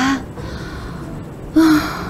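A woman's short, voiced sigh about one and a half seconds in, breathy and held on one steady pitch.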